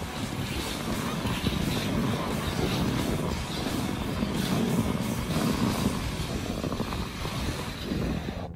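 Steady rushing scrape of a sled sliding fast over snow, with wind buffeting the microphone.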